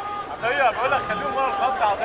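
Faint shouting voices picked up by the pitch-side microphones at a football match, pitched and wavering, well below the level of the TV commentary.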